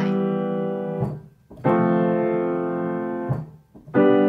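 Piano triads played one after another in the bass, each chord dying away and leaving a short gap of silence before the next. The sustain pedal is lifted and pressed at the same moment as the hands, so the chords sound disconnected instead of joining smoothly.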